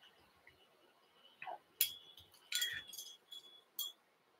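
Metal fly-tying tools, a bobbin holder and hackle pliers, clinking together: four or five light, sharp clinks with a brief metallic ring, starting about two seconds in.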